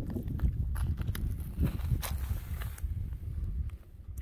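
Footsteps on rocky, gravelly ground, a few irregular steps, over a steady low rumble of wind on the microphone.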